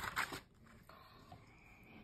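Quiet rustle of a paper picture-book page being turned by hand.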